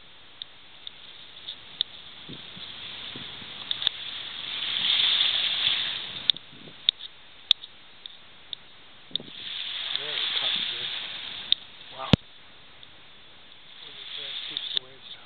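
Waves washing up on a beach: two hissing swells that build and fade over about two seconds each, roughly five seconds apart, with scattered sharp clicks.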